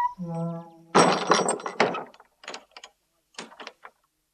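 Sound effect of a wooden door creaking open on its hinges, followed about a second in by a rattling clatter and then a few scattered knocks.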